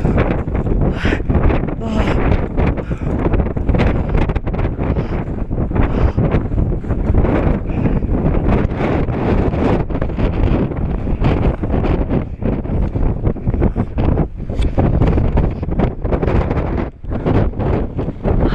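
Strong wind buffeting an action camera's microphone: a loud, gusting rumble that rises and falls throughout, with a short laugh near the start.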